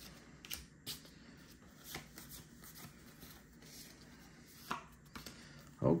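Pokémon trading cards being handled and slid past each other in the hands: a few faint, scattered clicks and soft rustles.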